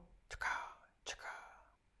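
A man's whispered, breathy vocal sounds: two short hissy bursts about a second apart, each starting with a click.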